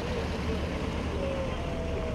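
Dump truck engine idling steadily, a low even rumble.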